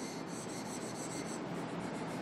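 Marker pen drawing lines on a whiteboard: a long scratchy stroke lasting over a second, then a brief one near the end.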